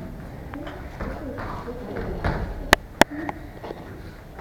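Children's taekwondo sparring: light taps of bare feet and blows on foam mats, with two sharp cracks about a third of a second apart near the end. Faint voices in the background.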